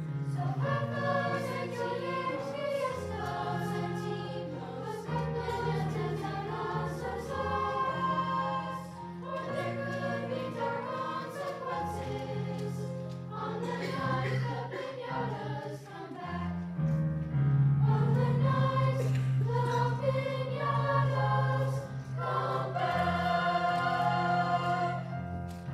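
Middle-school choir singing a song together, with steady sustained low notes underneath.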